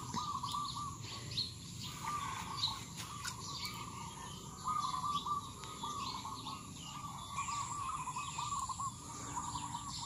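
Birds singing, one repeating a short warbling phrase over and over at a steady pitch, with fainter higher chirps around it.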